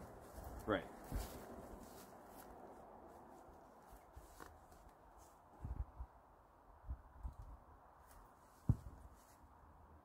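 Faint outdoor background with a handful of soft, low thumps scattered through it, the clearest near the end.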